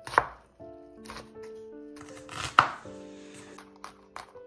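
Kitchen knife chopping onion and garlic on a wooden cutting board: a few sharp knocks of the blade on the board, the loudest just after the start and about two and a half seconds in.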